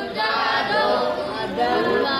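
A group of voices chanting a Sanskrit verse together in unison, repeating the line just given by the teacher.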